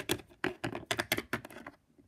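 Small plastic Littlest Pet Shop figurines tapped and hopped along a hard floor by hand, making quick, irregular clicks, several a second.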